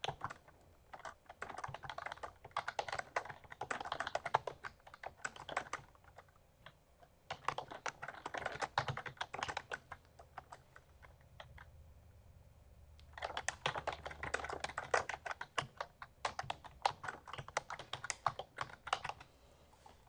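Typing on a computer keyboard: three runs of rapid keystrokes with short pauses between them.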